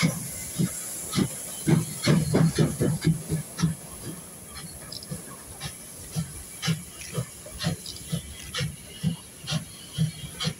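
Steam locomotive 23 1097, a DR class 23.10 two-cylinder 2-6-2, pulling a train away: exhaust chuffs about two a second over a steady hiss of steam from the cylinders. A louder run of quicker beats comes around two to three seconds in.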